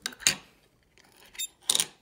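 Small hard clicks and knocks of a plastic Petri dish being handled and set down on a wooden desk. There is a sharp knock just after the start and two more after about a second and a half.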